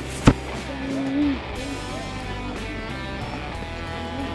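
Background music with guitar, and a single sharp knock about a third of a second in.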